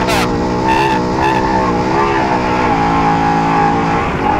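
Trophy truck race engine held at high revs, its pitch wavering slightly as the driver modulates the throttle, over steady wind and road noise from driving fast on a desert dirt road. Two short high beeps sound about a second in.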